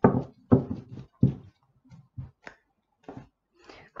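Oracle cards being drawn from a deck and set down on a table: a series of short taps and slaps at irregular spacing, loudest in the first second and a half, then a few fainter ones.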